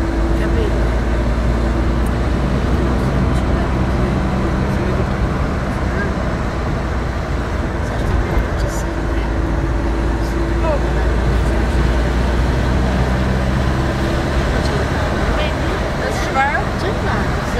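Car engine and tyre noise heard from inside the cabin while driving: a steady low drone that holds nearly even throughout.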